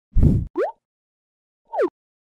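Logo-intro sound effects: a deep pop right at the start, then a short tone sliding upward, and near the end a short tone sliding back down.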